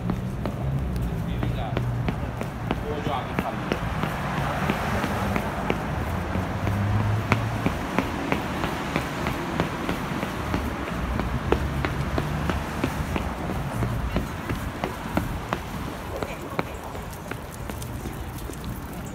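Quick footsteps on a concrete sidewalk, about two to three a second, over steady city street noise.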